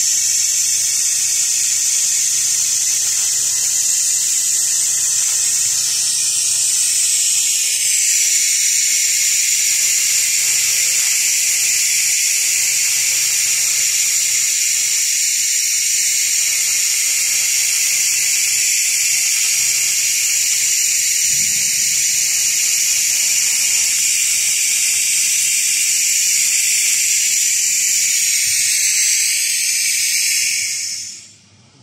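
A 1 kW fiber laser cleaning head ablating rust off steel: a steady, loud, high-pitched hiss, with its tone shifting slightly about eight seconds in.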